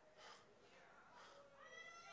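Near silence: hall room tone with faint, distant voices from the congregation.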